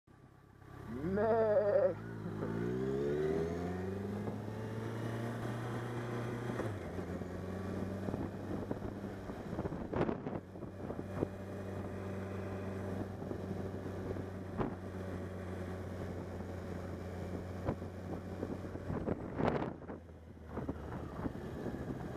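Motorcycle engine pulling away, rising in pitch over a couple of seconds, then running at a steady cruise with a shift down in pitch about seven seconds in, under wind noise on the microphone. A couple of sharp knocks come about ten seconds in and near the end, where the engine briefly eases off.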